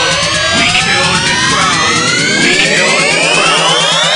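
Electronic bassline dance track with no vocals, dominated by layered synth sweeps rising steadily in pitch over a steady low bass pulse.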